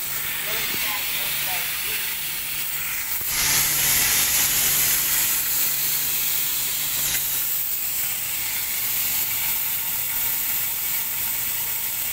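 Fire sprinkler head spraying water under line pressure in a flow test, a steady high hiss that grows louder about three seconds in.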